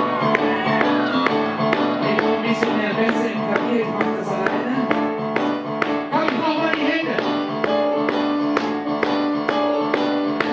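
Live music played on a stage keyboard: sustained chords over a steady beat of about three strokes a second.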